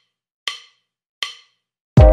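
Two sharp wood-block clicks about three-quarters of a second apart, the ticking lead-in of a backing music track, which kicks in with a full beat at the very end.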